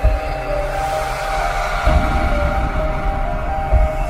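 Intro music: held synth tones over a swelling whoosh, with a deep low rumble that grows stronger about two seconds in.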